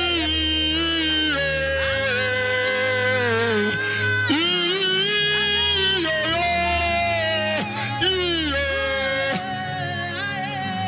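Live gospel worship singing: a man and a woman singing into handheld microphones, with long held notes and sliding pitches over sustained low backing chords.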